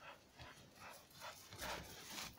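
A dog running through snow toward the listener: a quick series of soft, crunching footfalls that grow louder as it comes closer.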